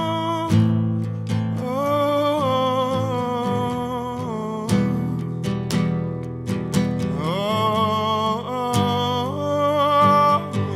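Solo acoustic guitar played under long, wordless held vocal notes that step up in pitch about two seconds in and again around seven seconds, with a few sharp strums along the way.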